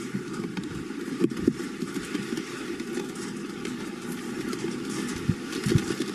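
Pitch-side outdoor ambience at a football match: a continuous rough, low rumbling noise, with a couple of faint knocks about a second and a half in.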